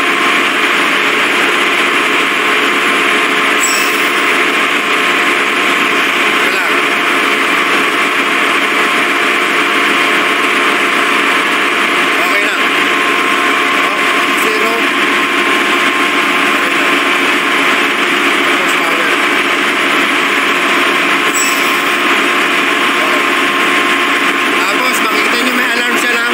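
Loud, steady machinery noise of a ship's engine room, an even wash of sound with a faint steady tone running under it, unchanged throughout.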